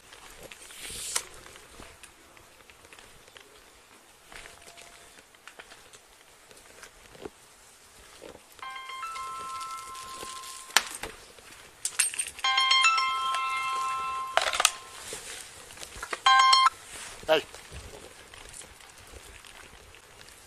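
A mobile phone ringing with an electronic ringtone: two rings of about two seconds each, then a short broken burst just before the call is answered.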